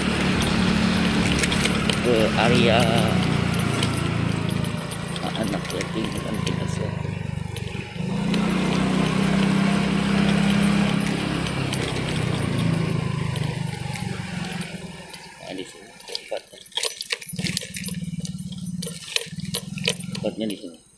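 Small motorcycle engine running while riding along a narrow lane, its pitch stepping up about eight seconds in as it accelerates, then easing off and falling quieter in the last few seconds as the bike slows.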